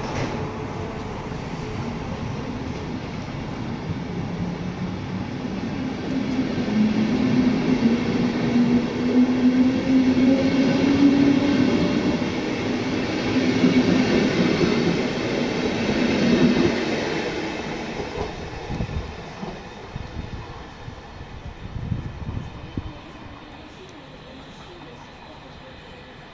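Passenger coaches of a departing train rolling past at close range, wheels running on the rails, with a hum that rises slightly in pitch. It grows louder to a peak about halfway through, then fades as the train pulls away, with a few knocks as it goes. Wind noise on the microphone.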